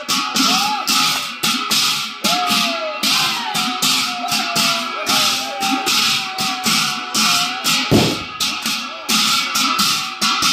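Large brass hand cymbals clashed in a steady, fast rhythm, about two to three strikes a second, their ringing carrying on between strokes. A heavier low thump comes about eight seconds in.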